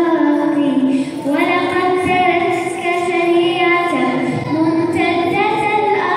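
A young girl singing a children's nasheed into a microphone, one voice holding long notes and gliding between them, with a short break about a second in.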